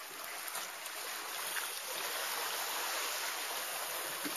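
Water lapping and trickling around a kayak on calm sea: a steady, even hiss with a few faint drips.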